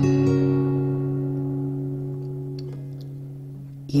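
Acoustic guitar with a capo on the fourth fret, a D major chord shape strummed once and left to ring, its notes slowly fading over about four seconds.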